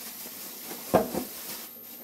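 Plastic bubble wrap rustling and crinkling as it is pulled off paint cans in a cardboard box, with a sharp knock about a second in as the packaging is handled.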